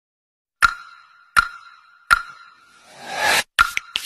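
Three identical sharp pops, each with a short ringing tone, about three quarters of a second apart. Near the end come a rising whoosh and a few quick clicks, in the manner of edited-in transition sound effects.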